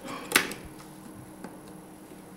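Plastic battery compartment door on a Samsung GX-10 DSLR's grip snapping shut with one sharp click, followed by a fainter click of handling about a second later.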